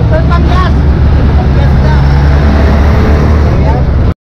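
Road traffic and a motor vehicle engine running steadily close by, a loud low hum, with a few words of speech in the first half-second.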